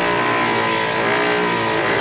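Homemade electric coconut grinder, a small motor run off a car battery spinning a blade inside a metal bowl. It runs with a steady whine while a coconut half is pressed against the blade and the flesh is shaved off with a rasping hiss.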